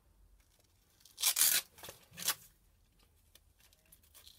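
An 80-grit hook-and-loop sanding disc being fitted to a sander's pad: a short noisy burst about a second in, then two briefer ones.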